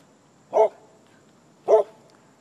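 Bearded collie barking: two short single barks about a second apart.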